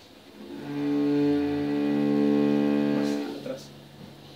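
Cello played with the bow: a sustained bowed note of about three seconds that changes pitch once partway through, then fades.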